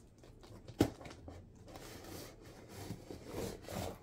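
Scissors cutting open a cardboard box: a sharp snip about a second in, then irregular scraping and rustling of cardboard and tape.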